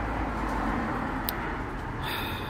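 Steady outdoor background noise of distant road traffic, with one brief faint click about a second and a quarter in.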